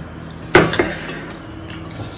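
Metal forks and serving utensils clinking against plates and glass bowls. One sharp clink about half a second in is the loudest, followed by a few lighter taps.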